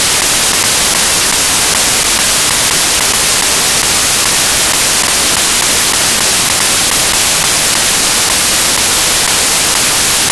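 Loud, steady static hiss, with most of its energy in the highest pitches.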